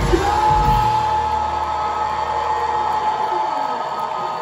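Live heavy-metal band in a break in the song: the drums stop about a second in, leaving a single sustained electric guitar note ringing and the bass dying away over crowd noise.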